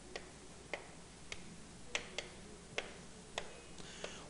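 Chalk tapping and clicking against a chalkboard as lines are drawn: about seven faint, sharp clicks spaced roughly half a second apart.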